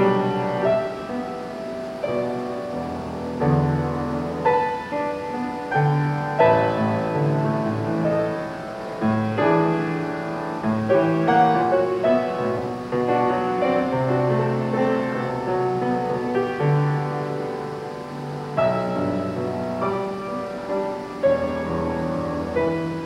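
Grand piano played solo: a continuous piece of struck notes and chords over sustained bass notes.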